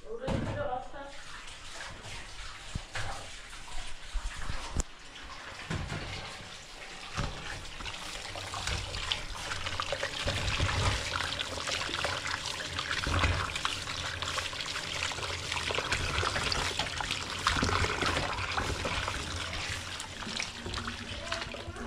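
Scattered knocks and clatter of kitchen handling, then from about eight seconds in a kitchen tap running into a steel pot in a stainless steel sink, splashing as tomatoes and a green pepper are rubbed and washed by hand under it.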